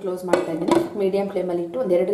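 Clinking of dishes, a ceramic plate against a steel cooking pot as the plate is handled to cover the pot: two sharp clinks, about a third and three quarters of a second in.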